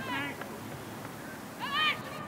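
Two short, high-pitched shouts from girls' voices, one right at the start and a louder one near the end, over a steady low outdoor background.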